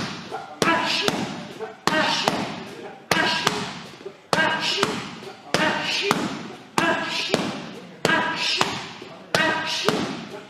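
Strikes landing on a heavy punching bag, one thud about every second and a quarter in a steady rhythm. Each thud is followed by a voice calling out.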